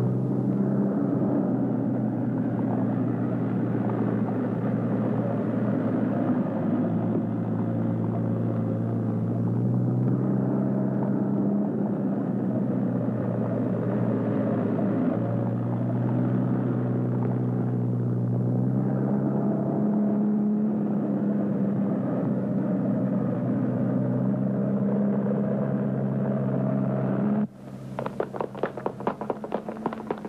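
Car engine running steadily, its low drone shifting slightly in pitch now and then. About 27 seconds in it cuts off abruptly, replaced by a quick run of footsteps.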